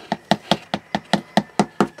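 A small spatula tapping rapidly on a piece of cardboard, about five taps a second, to knock leftover powder-coat powder off the cardboard into the bowl.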